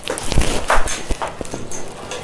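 A run of irregular knocks and taps, the loudest a low thump about half a second in.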